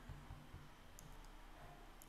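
Near silence: room tone with a faint single click about a second in.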